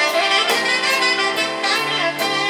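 A live band playing, with the saxophone most prominent over keyboard and drums; cymbal strokes keep a steady beat.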